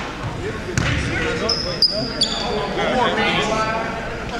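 Basketball bouncing and knocking on a hardwood gym floor, with a few sharp knocks in the first half and several brief high squeaks, in a large echoing gym with voices chattering in the background.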